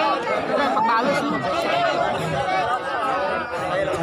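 A large crowd of spectators chattering, many voices talking at once.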